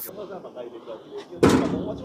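A single short bang on a blue metal used-clothing recycling bin, about one and a half seconds in, after a faint stretch of street background.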